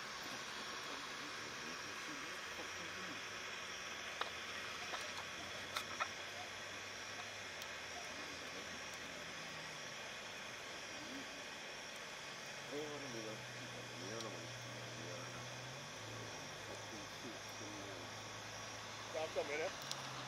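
Quiet outdoor background: a steady hiss with a low hum. Faint distant voices come in about two-thirds of the way through, and there are a few faint clicks.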